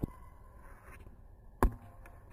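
A basketball bouncing on a court while being dribbled: two dull thuds, one at the start and a louder one about a second and a half in.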